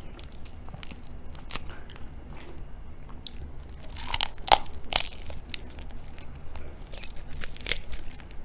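Raw tiger prawn being pulled apart by hand and bitten and chewed close to the microphone: scattered small crackles and clicks of shell and flesh, the sharpest cluster about halfway through, with wet chewing.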